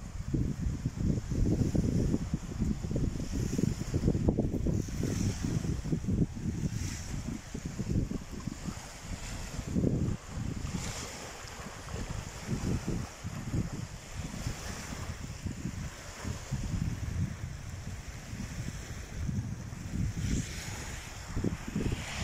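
Wind buffeting the phone's microphone in uneven gusts, with small waves washing at the shoreline underneath.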